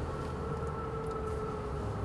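Nissan car heard from inside the cabin while moving slowly: a steady low rumble of engine and tyres with a faint steady hum.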